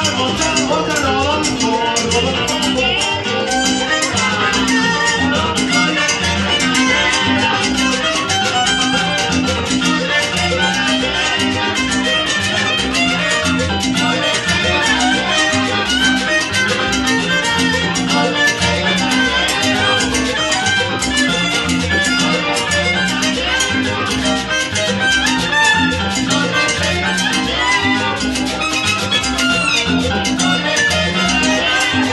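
Live salsa band playing, with hand drums keeping a steady percussion beat under the ensemble.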